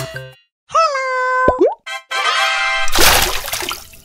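Cartoon sound effects of an animated logo sting: a short held synth tone that ends in a quick drop-and-rise bloop. Then a brief musical flourish and a loud fizzy swoosh about three seconds in.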